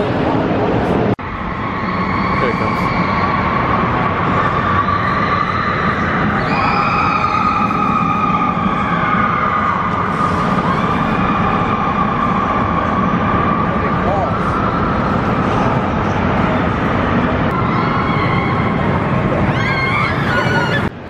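Gerstlauer Euro-Fighter steel roller coaster train running along its track overhead, a steady roar carrying a sustained whining tone, echoing in a large hall, with voices of riders and onlookers mixed in.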